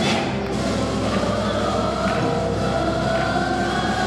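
Children singing a melody into microphones, accompanied by a school string orchestra of violins playing sustained chords.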